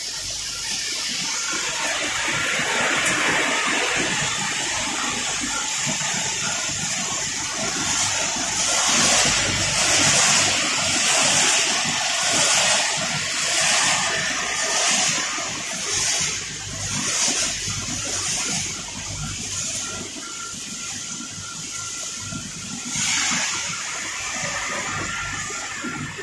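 Machinery of a running peanut frying and processing line: a steady rushing noise, strongest in the high range, that pulses about once a second through the middle before easing off near the end.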